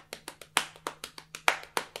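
A hand tapping on a thigh in an even run of straight eighth notes, about seven taps a second, with a few taps landing louder than the rest.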